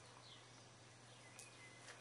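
Near silence: room tone with a faint steady low hum and one faint click about one and a half seconds in.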